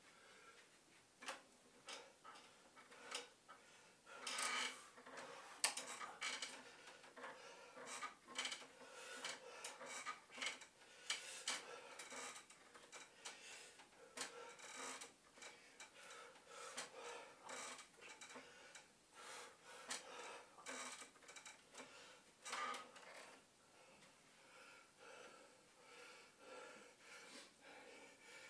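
Faint breaths every few seconds and scattered light clicks and knocks from a man exercising on wooden wall bars.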